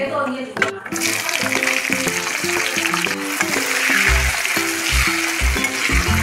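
Hot oil sizzling loudly in a pan as sliced onions go in on top of frying whole spices and are stirred. The sizzle starts suddenly about a second in and stays strong throughout.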